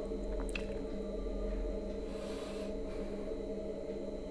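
Low, steady background hum of several constant tones, with a couple of faint clicks early and a faint brief hiss about two seconds in.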